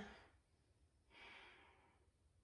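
A single faint exhaled breath, a soft sigh-like puff a little over a second in that fades within a second, from a woman holding an inverted forearm balance.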